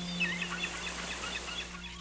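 Small birds chirping in quick, short calls while soft background music fades out.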